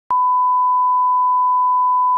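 A 1 kHz reference test tone, the steady beep that goes with colour bars. It switches on with a click just after the start and holds at one pitch.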